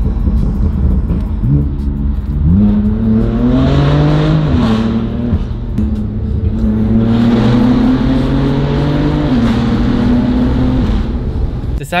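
Car engine with an aftermarket exhaust accelerating, heard from inside the cabin. The exhaust note climbs about two seconds in and holds, drops back, then climbs and holds again before easing off near the end.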